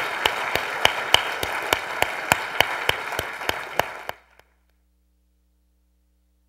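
Audience applauding, with a few close, sharp hand claps standing out. The applause cuts off suddenly about four seconds in.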